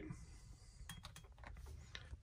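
Near silence, with a few faint light clicks about a second in and another near the end as a safety razor is handled and set down among the shaving gear.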